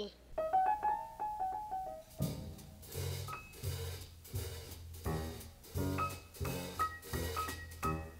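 A brief laugh, then a small jazz combo plays: a quick run of single notes stepping up and down, and about two seconds in the full group comes in with bass and drums under short, high held notes.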